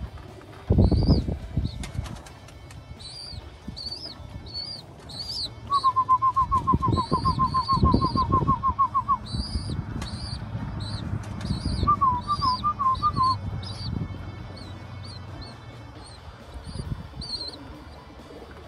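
Pigeon wings flapping in short bursts, about a second in and again from about six to nine seconds. Repeated short high bird chirps run throughout, with a fast even trill in the middle.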